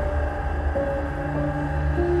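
Dark, sustained trailer music: held tones over a deep, steady low drone.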